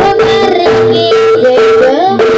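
Loud live jaranan music: a wavering vocal melody with pitch glides over a steady held note.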